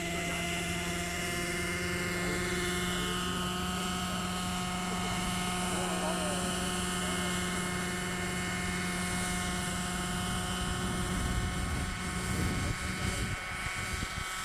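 Radio-controlled model helicopter in a low hover, its small glow-fuel engine and rotor running with a steady, unchanging pitch.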